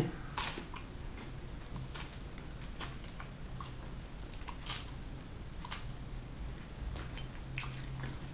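Close-up biting and chewing of flaky puff pastry, with short crisp crackles about every second.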